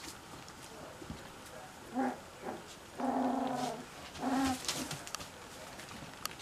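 Cocker spaniel puppies whimpering: three short, low, crooning whines, the longest lasting under a second midway. Light scratching and clicking of small claws runs through it.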